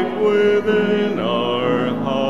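A church choir sings a slow hymn, with sustained sung notes; just after a second in, one note slides down and is held.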